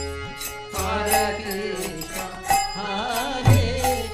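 Devotional bhajan: a voice sings a winding, ornamented melody over the steady held chords of a harmonium, with low strokes on a mridanga drum.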